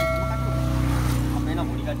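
A steady, low-pitched engine drone, with a ringing chime fading out within the first second.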